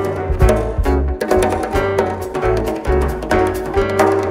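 Instrumental fado played live by a band: a Portuguese guitar picking a quick melody over bass notes, with guitar, piano and drums.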